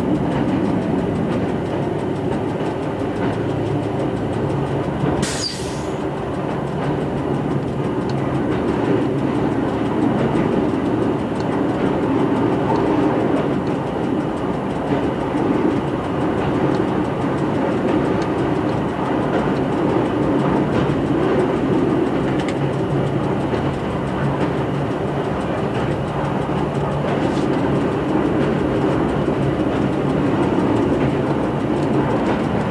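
Y1 diesel railcar, rebuilt with Volvo engines, running steadily at speed as heard from the driver's cab: engine drone and wheel-on-rail rumble. A short sharp crack cuts through about five seconds in.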